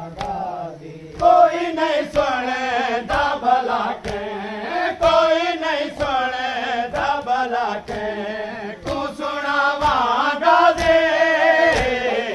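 Men chanting a noha, a Shia mourning lament, in unison, with a steady beat of sharp slaps on the chest (matam) keeping time.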